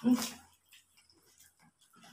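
A short "hmm" of relish from someone eating, about half a second long at the start, followed by near silence.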